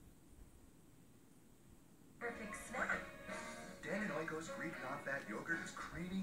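About two seconds of near silence while the over-the-air tuner switches to the selected channel. Then a television commercial starts playing from the TV's speaker, a voice over music.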